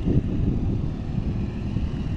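Steady low rumble of wind on the microphone and vehicle road noise, as from filming out of a moving vehicle.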